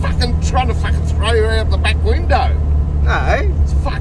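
Car engine droning steadily, heard from inside the cabin while driving, with a man's voice exclaiming over it.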